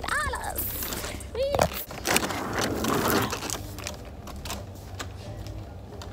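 Clattering and rustling handling noise over a steady low store hum, with a knock about two seconds in followed by about a second of rustling; two brief vocal sounds come in the first two seconds.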